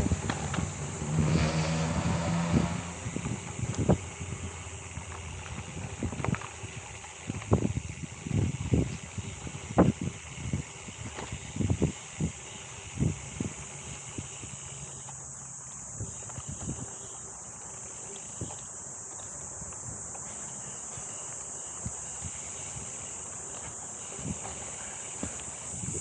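Gravel bike rolling over a bumpy dirt singletrack, with irregular knocks and rattles from the bike over roots and ruts through the first half, then smoother rolling. A steady high-pitched insect drone runs underneath.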